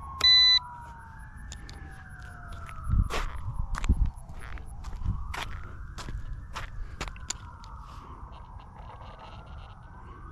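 A small RC helicopter's electric motors winding down after landing: a whine that falls steadily in pitch over the first few seconds. A short, loud electronic beep sounds just after the start. Under it a siren wails slowly up and down, with a few scuffing steps on asphalt in the middle.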